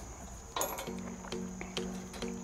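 Background music with plucked-string notes coming in about half a second in, over a few light metallic clinks from the tailgate table's hardware being handled.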